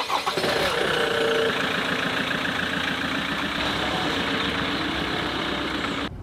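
Land Rover Defender 110's engine starting up and then running at a steady level as the vehicle pulls away along a gravel track.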